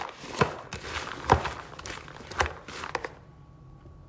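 A spatula stirring candy-coated popcorn in a large plastic bowl: irregular scrapes and knocks against the bowl, the loudest about a second in, falling quiet after about three seconds.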